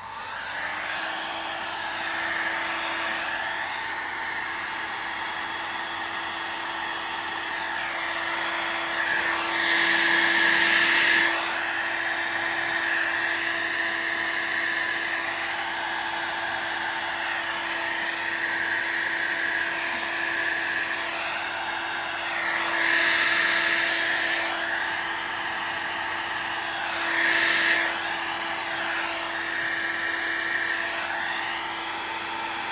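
Handheld hot-air blower switched on and running steadily with a motor whine, pushing wet alcohol ink across a board. It swells louder three times: around ten seconds in, after about twenty-two seconds, and near the end.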